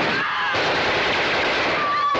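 Sustained automatic gunfire, loud and unbroken, with a few thin wavering tones above it.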